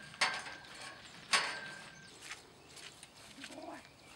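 Two sharp knocks about a second apart, with a short low sound near the end.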